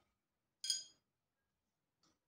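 A single short clink of a glass medicine ampoule, ringing briefly, a little over half a second in.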